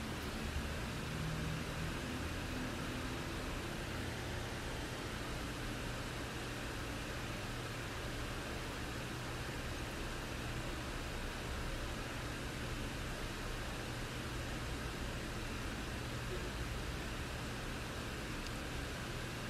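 Steady hiss with a faint low hum and no speech: the background noise of an open microphone on a recorded online call.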